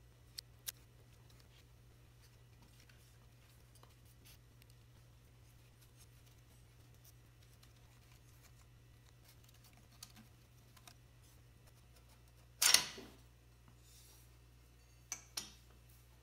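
A few light metal clicks as a finned alloy cylinder barrel is eased up its studs and off the piston of a Vincent twin engine, with one louder knock or scrape about three-quarters of the way through.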